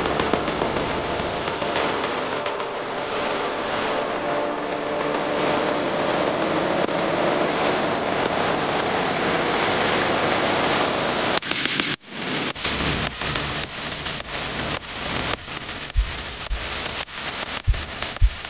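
F-35's jet engine running on the ground: a loud, steady roar with a faint whine in it. About twelve seconds in, the sound cuts to a rougher, crackling noise full of sharp pops.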